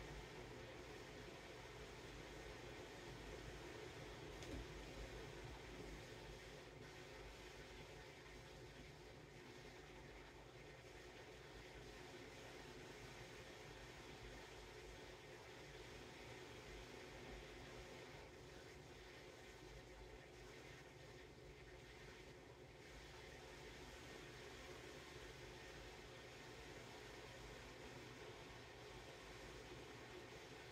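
Near silence: steady room tone with a faint hiss.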